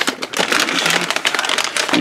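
A plastic anti-static bag crinkling as it is handled and opened, a dense run of irregular crackles.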